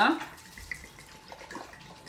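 Tequila pouring from a glass bottle into a clay cazuela over sliced citrus, a steady trickling splash of liquid.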